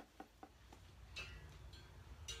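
Near silence: room tone with a few faint ticks, most of them in the first second.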